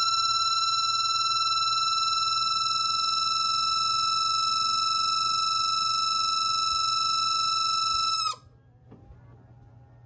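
1987 Pontiac Fiero GT's heater blower motor running with a loud, steady high-pitched squeal, its pitch sagging slightly. About eight seconds in it stops abruptly with a brief drop in pitch. The noise is new, and the owner takes it as a sign that something is wrong with the blower motor.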